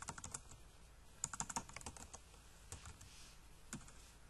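Faint typing on a computer keyboard: sharp key clicks in a few short bursts.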